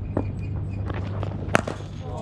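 A cricket bat strikes a ball with one sharp crack about one and a half seconds in, among lighter scuffs and steps on the pitch. A steady low hum runs underneath.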